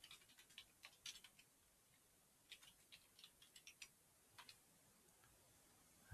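Faint key clicks of a computer keyboard being typed on, in two short runs with a pause between and a couple of clicks later.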